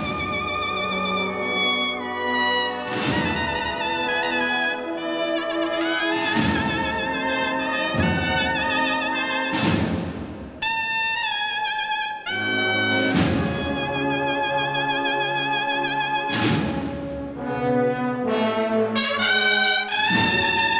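A Spanish cornetas y tambores band playing a slow processional march: sustained bugle chords that change every second or so, with a percussion strike ringing out roughly every three seconds.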